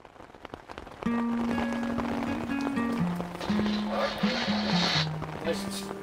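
Rain falling, with scattered drop clicks. About a second in, background music comes in on top: a slow line of long held notes stepping up and down in pitch, and it becomes the loudest sound.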